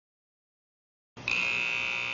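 Silence, then about a second in a steady high-pitched machine whine with a low hum starts suddenly and carries on.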